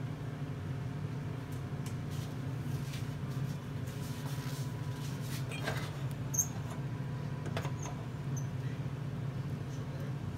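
A steady low hum runs underneath, with a few faint scrapes and a couple of small high squeaks in the middle as a candy apple on a stick is swirled in a metal pot of hot candy syrup.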